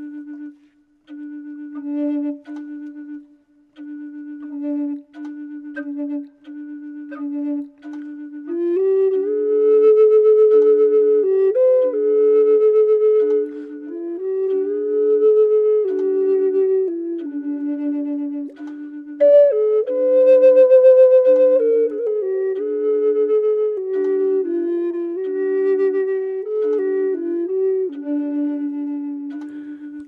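Two Native American flutes. One low note sounds again and again in short phrases, and about eight seconds in a second flute comes in above it with a slow melody that steps up and down. Together they harmonize well against that one note.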